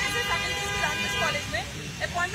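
A vehicle horn sounds one steady note for about a second and a half, over a woman talking.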